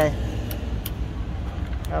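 Small engine of an Olympia Super Best sprayer cart running at a steady idle. A few short clicks come at the control panel, about half a second and a second in and again near the end.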